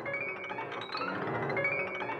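Steinway grand piano played by a key-testing robot, quick runs of notes climbing up the keyboard one after another.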